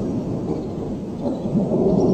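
Low rumbling thunder from a lightning storm, easing slightly midway and building again near the end.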